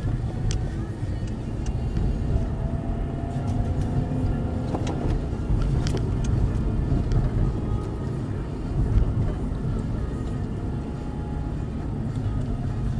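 Steady low road and engine rumble of a car driving, heard inside the cabin, with a few small clicks scattered through it.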